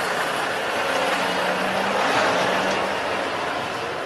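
A heavy truck hauling a large wheeled vehicle on a low flatbed trailer passes close by, its engine humming steadily under tyre and road noise. The noise swells to a peak about two seconds in, then eases off.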